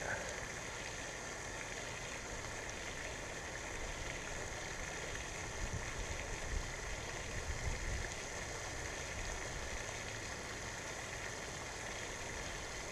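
Steady, even hiss of falling water from a pond fountain's spray, with a few faint low bumps around the middle.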